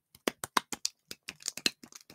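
Slime being squeezed and worked by hand, giving an irregular run of sharp clicks and pops, about five a second.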